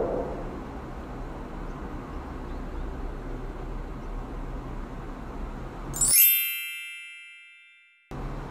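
Steady low hum of road and car noise from a dash cam. About six seconds in it cuts off and a loud bell-like ding sound effect rings out and slowly fades away.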